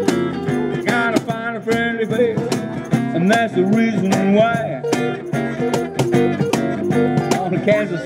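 Live blues band playing an instrumental passage: electric guitar, acoustic guitar and acoustic bass guitar over a steady cajón beat, with bending guitar notes.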